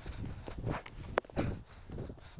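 Footsteps over dry grass and rock: a run of uneven soft thuds, with one sharp click about a second in.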